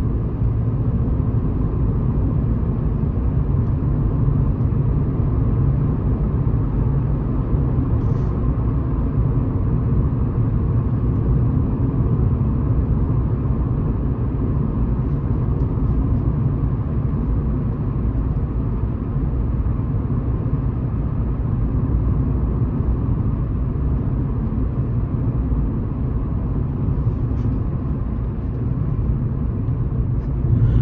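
Steady in-cabin noise of a car cruising on an open road: a continuous low rumble of tyres and engine, with no change in pace.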